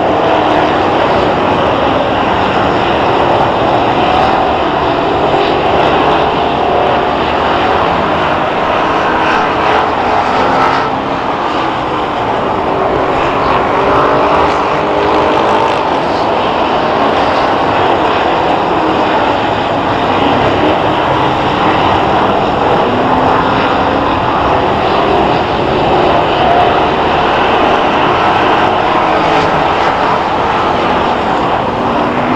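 A field of dirt-track stock cars racing together, their engines making a steady combined drone whose pitches rise and fall as cars run through the turns and down the straights.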